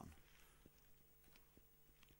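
Near silence: faint room tone with a low steady hum and a few soft ticks.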